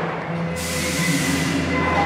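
Steady machinery noise in a steel processing plant: a continuous hum with a few held tones, joined about half a second in by a steady hissing rush.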